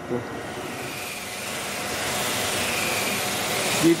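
A handheld disc grinder running against a glass sculpture, giving a steady whirring hiss with a faint whine that grows a little louder. It is grinding the glass surface smooth, wearing away the earlier grind lines on the way to a shine.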